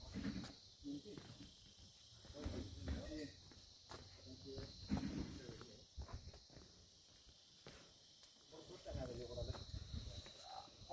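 Faint, indistinct voices talking in snatches, over a steady high-pitched insect drone of crickets or cicadas.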